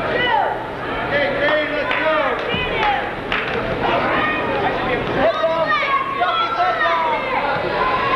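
Spectators and coaches in a gym shouting and calling out during a wrestling bout, many short overlapping yells with general crowd chatter underneath.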